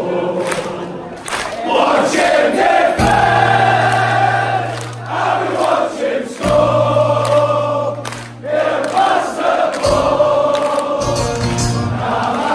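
A packed crowd of football fans singing a terrace song together in unison, many voices holding long notes, over a steady low amplified bass note.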